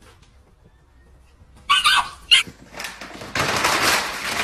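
Two short, high-pitched animal cries about two seconds in. Near the end, the dense crackle of a clear plastic sheet being pawed and dragged by a puppy on a wooden floor.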